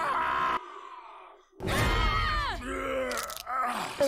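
A cartoon character groaning: a short vocal sound, about a second of quiet, then a louder drawn-out groan falling in pitch with a deep rumble under it.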